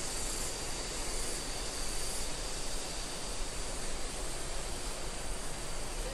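Steady forest ambience: an even rushing noise with a constant high-pitched insect drone, typical of crickets, running unbroken underneath.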